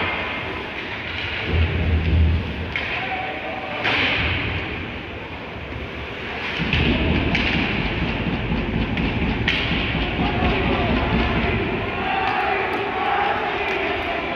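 Ice hockey play in an arena: skates and sticks on the ice, with several sharp knocks and low thuds of the puck and players against the boards, and occasional shouts.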